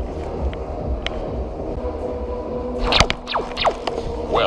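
Laser tag blasters firing: a few quick electronic shot sounds that sweep down in pitch, about three seconds in, over a steady low rumble with scattered clicks.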